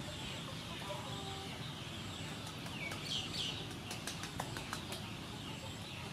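Short bird calls about three seconds in, over a steady background hiss with a faint high tone that comes and goes, followed by a quick run of sharp clicks.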